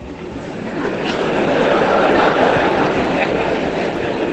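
Live audience laughing and applauding, a dense crowd noise that swells over the first two seconds and then holds steady.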